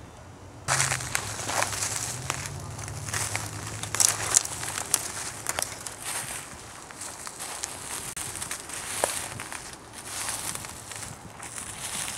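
Rustling and crackling with many scattered small clicks, as of movement through dry leaf litter and handling close to the microphone. It begins suddenly about a second in.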